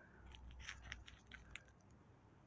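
Near silence with faint, irregular small clicks, about five in a second and a half, over a faint low rumble.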